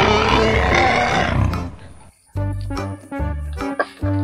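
A roaring dinosaur sound effect, rough and loud, fading out about two seconds in. Background music then resumes.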